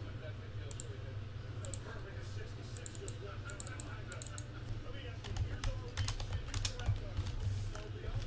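Typing on a computer keyboard: scattered key clicks that come quicker and louder from about five seconds in. Underneath are a low steady hum and faint voices.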